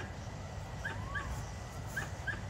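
Quiet outdoor background: a low, uneven wind rumble on the microphone, with a few short, high bird chirps.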